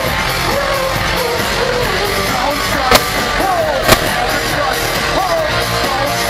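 Live electropop song played loud over a concert PA, with singing and yelling voices over the beat. Two sharp knocks about three and four seconds in stand out above the music.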